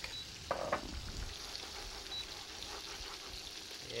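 Steady sizzle of chicken cutlets frying in oil, with a wire whisk stirring a thick vegetable béchamel sauce in a pan beside them. There is a brief louder noise about half a second in.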